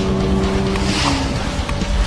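Sound effects of a car-themed video intro: a steady low hum with a whoosh about a second in and a few light clicks.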